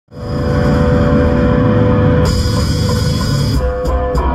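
Live punk rock band playing loud on stage: a sustained, ringing chord with a cymbal wash, then a little before the end the drum kit starts a steady beat with evenly spaced cymbal strikes, about three a second.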